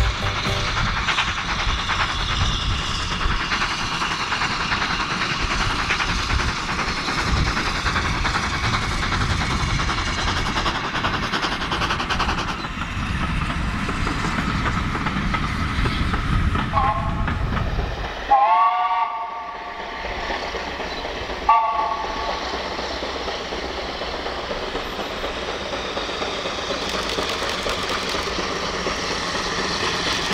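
Small LBSCR Terrier steam tank engine running, with a steady noise, then sounding its chime whistle three times: a short blast, a longer blast and another short one. Each blast holds several notes together.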